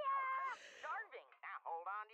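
Cartoon character dialogue played back softly: a drawn-out, high-pitched excited "Yeah!" followed about a second and a half in by quick lines of animated speech.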